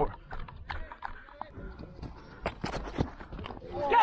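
Irregular taps and knocks, a few of them sharp, the loudest a little before the end, from a helmet-mounted camera and the batsman's kit as he moves, with faint distant voices.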